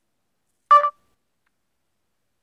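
A single short electronic beep at a steady pitch from the Google Translate app on an Android phone, the tone that signals speech input is starting. It comes about three quarters of a second in and lasts about a quarter of a second.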